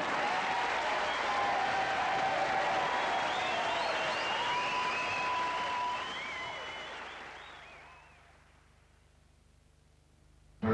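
Studio audience applause at the end of a sketch show. It fades out from about six seconds in, leaving near silence for the last two seconds.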